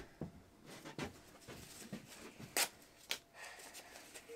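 Handling of a sheet of sandpaper: two brief, crisp crackles about two and a half and three seconds in, otherwise quiet.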